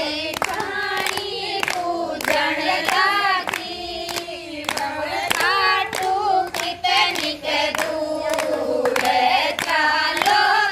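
Group of women singing together, keeping time with steady hand-clapping at about two claps a second.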